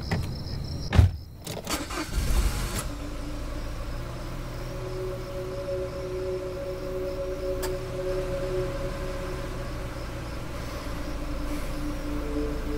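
A car door shuts with a sharp thud about a second in, cutting off the crickets heard outside. About two seconds in the engine starts with a brief rumble, then runs steadily as a low hum, heard from inside the cabin, under a sustained low drone.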